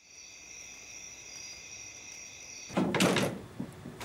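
Steady high chirring of night insects, then about three seconds in a wooden door opens with a loud clunk and rattle, followed by a couple of softer knocks.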